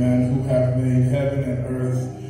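Slow church music of long, held, low-pitched notes, chant-like, changing pitch about every half second.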